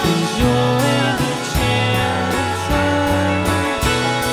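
Indie rock band playing live: guitars over a steady beat, mid-song, with no words sung.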